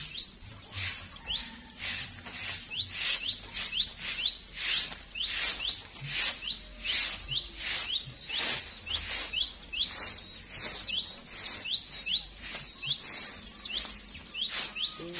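A short-handled grass broom sweeping over grass and dry leaves in quick, even strokes, about two a second. A bird chirps repeatedly in short rising notes between the strokes.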